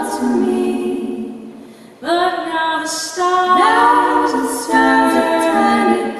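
Three women's voices singing in close harmony. A held chord fades away about two seconds in, then a new phrase begins and the voices move together through long sustained notes.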